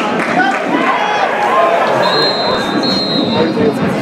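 Football stadium crowd noise, many spectators' voices talking and calling at once. About two seconds in, a single steady whistle blast from the referee lasts under two seconds as a player is brought down.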